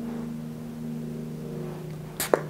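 A steady low hum made of several held tones, unchanging throughout, with no sudden sounds.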